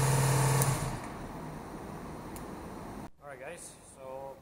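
Honda V45 Sabre's 750 cc V4 engine idling with a steady note, on what is described as a little bit of a finicky idle, then shut off less than a second in, its sound dying away within about half a second.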